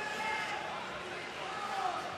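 Arena crowd noise, a steady hubbub with a few voices calling out over it.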